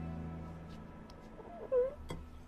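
A young woman crying: one short, pitched sob near the end, its pitch dipping and rising, as soft background music fades out.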